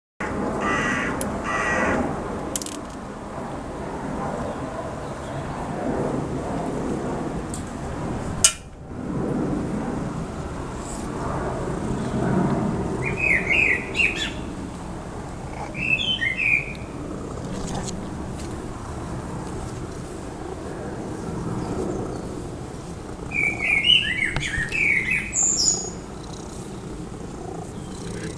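Small birds chirping in three short flurries, the last and loudest a little over two thirds through, over a steady low background noise. A single sharp click comes about a third of the way in.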